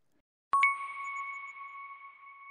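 A single bell-like ding, a chime sound effect, struck about half a second in and ringing on with two clear tones that fade slowly.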